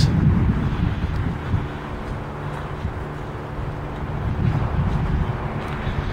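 Wind rumbling on the microphone, heaviest in the first second, over a faint steady low hum.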